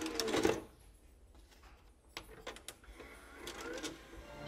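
Sharp mechanical clicks and clunks: a loud cluster in the first half-second and a few single clicks about two seconds in. A short rising whine comes near the end.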